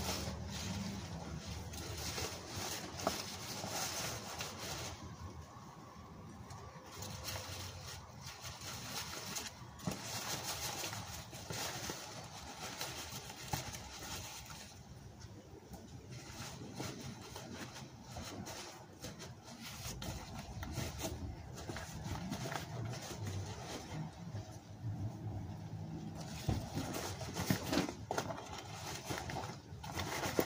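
Cardboard boxes rustling and scraping against each other and against leafy branches as they are fitted over a small tree, with irregular crackles and a few quieter pauses.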